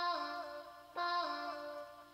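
Output Exhale vocal-engine sound played from Kontakt: a synthesized vocal chord triggered twice, about a second apart, each one stepping down in pitch just after it starts and then fading.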